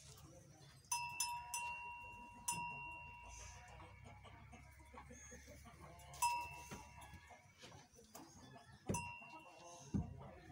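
A small metal bell ringing several times, in a quick cluster of strikes about a second in, again at two and a half seconds, and twice more later. Each strike rings on for a second or more.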